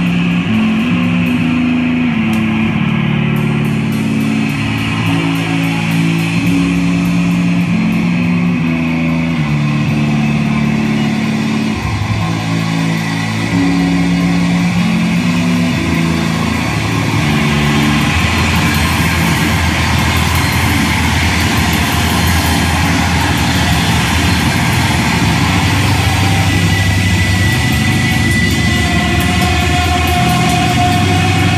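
Live rock band playing loud through a club PA. For about the first seventeen seconds a bass guitar riff of stepping low notes leads. Then the sound fills out into the full band with drums and crashing cymbals.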